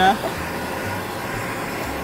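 Handheld kitchen blowtorch burning with a steady hiss as its flame chars the surface of a raw tuna steak.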